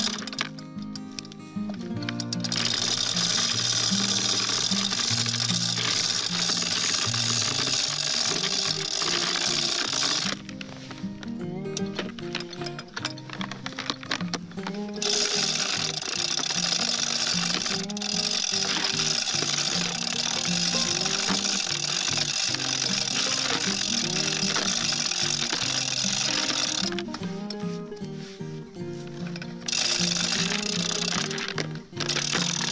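Background music: a melody of held notes over a bright high layer that drops out briefly at the start, for several seconds around a third of the way in, and again near the end.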